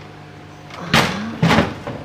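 Black plastic aquarium lid being set back down onto the glass tank: two knocks about half a second apart as it settles into place.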